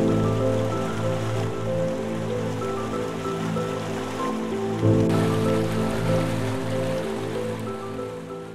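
Slow, sustained piano chords over the steady rush of a waterfall, with a new chord struck right at the start and another about five seconds in.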